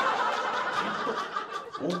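Men laughing together at a punchline, the laughter loudest at first and slowly dying down.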